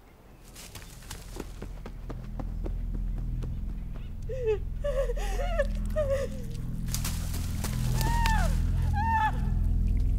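A low, ominous music drone swells up and holds. Over it come short rising-and-falling whimpering cries: a cluster in the middle and two more near the end.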